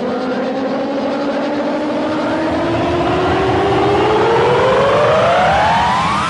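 A rising sweep in the edited soundtrack: one pitched tone with overtones climbs steadily in pitch, faster and faster toward the end, growing slightly louder as it builds.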